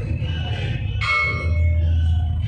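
A temple bell struck about a second in, ringing on in several steady overlapping tones over a low steady hum.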